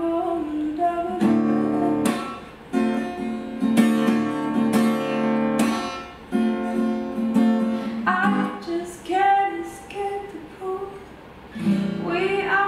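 Steel-string acoustic guitar playing strummed chords, with a woman's voice singing over it at the start and again from about eight seconds in.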